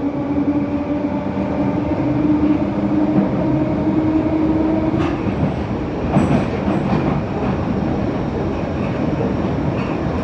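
Bakerloo line 1972 stock tube train running through the tunnel. A steady whine rises slightly, then cuts off about five seconds in with a click, and rattles and knocks follow over the continuous running noise.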